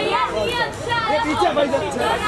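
Several men's voices talking and calling out over one another: overlapping chatter.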